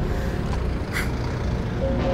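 Steady low rumble of a ship under way, with a brief hiss about a second in.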